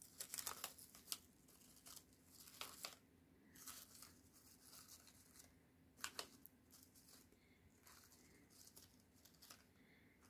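Faint rustling and crinkling of cardstock and paper flowers being handled, with a few small sharp clicks scattered through, the strongest about a second in and about six seconds in.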